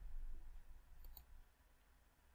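Two faint computer mouse clicks in quick succession about a second in, over a low hum.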